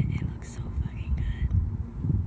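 Faint whispered voices over a low, irregular rumble, with a brief hiss about half a second in.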